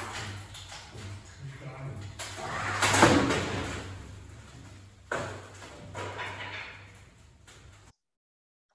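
Hydraulic loading rig of a structural test frame humming steadily as it works hard, while a composite wind turbine blade section under four-point bending gives several sharp cracks. The loudest comes about three seconds in and rings off, and another follows just after five seconds. This is the sudden failure of the blade, where the internal shear web separates from the blade shell and the shell cracks at the supports. The sound cuts off just before the end.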